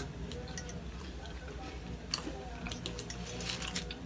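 Quiet chewing of chocolate candy, with a few faint scattered clicks and low voices in the background.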